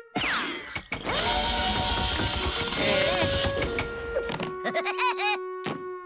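Cartoon music with sound effects: a sharp thunk just under a second in, a long dense rushing noise under the music for about three seconds, then a run of quick swooping whistle-like glides near the end.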